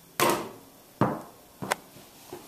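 A small ball shot at a mini basketball hoop: two sharp knocks about a second apart as it strikes the hoop and lands, then a few lighter bouncing taps near the end.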